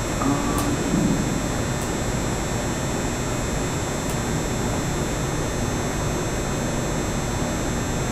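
A steady machine-like hum and hiss with no clear rhythm, a little louder than the room tone before it, with a brief faint sound about half a second in.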